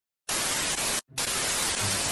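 Television static: a steady white-noise hiss that starts a moment in, cuts out for an instant about a second in, then carries on.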